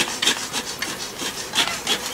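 Rubbing and scraping sounds, short irregular strokes about three or four a second.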